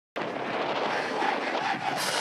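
Steady outdoor stadium noise of crowd murmur with wind on the microphone, cutting in just after the start.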